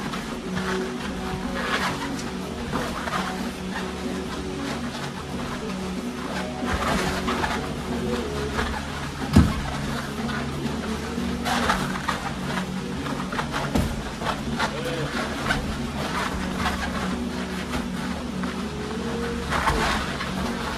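Boxing sparring: scattered thuds of gloved punches and shuffling footwork over background music and voices. One sharp thud about nine seconds in is the loudest sound.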